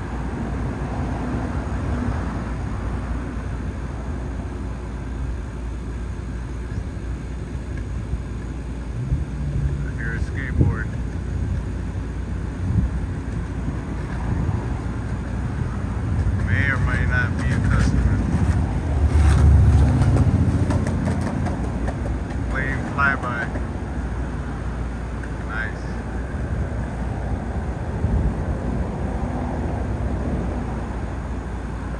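Steady low rumble of distant traffic, swelling loudest about twenty seconds in, with a few short high warbling sounds scattered through it.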